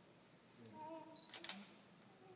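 A DSLR camera's shutter firing: a quick double click about a second and a half in, against a quiet room.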